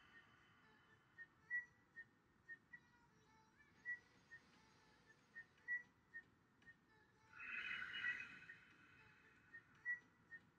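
One long, deep exhale out through the mouth, about seven seconds in, during slow guided belly breathing, over faint, scattered high chirps.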